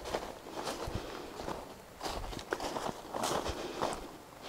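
Footsteps walking through fallen leaves on a woodland track, soft irregular crunches about every half second to a second.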